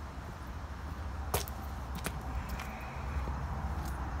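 Footsteps on a concrete path: two sharp steps, about a second and a half in and again just after two seconds, over a steady low rumble.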